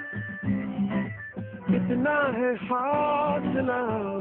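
Background music: a Hindi song with a man singing over guitar and other backing instruments.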